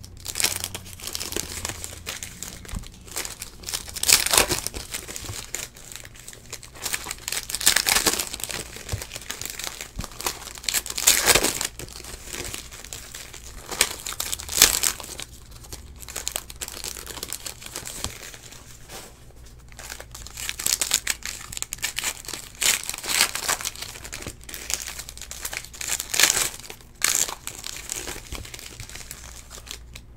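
Foil wrappers of 2017 Donruss Elite Football card packs crinkling and tearing as they are peeled open by hand, in irregular bursts with several louder rips spread through.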